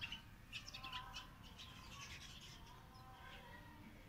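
Faint bird chirping in the background, with a few short calls in the first second or so over an otherwise near-quiet rooftop.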